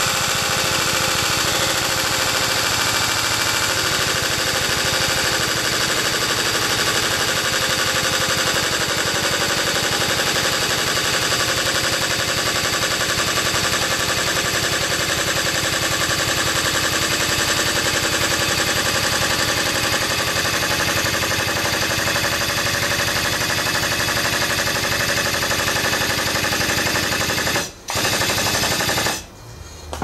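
A body-straightening rig's pump runs loudly with a fast, steady chatter as it pulls out the crumpled rear of a car body. It drops out for a moment near the end, then stops.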